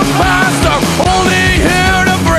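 Punk rock song played loud and steady by a full rock band, with a sung vocal line over it.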